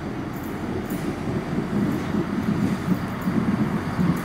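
Class 170 Turbostar diesel multiple unit approaching along a station platform: a low, steady rumble of its underfloor diesel engines and wheels on the rails, growing gradually louder as it nears.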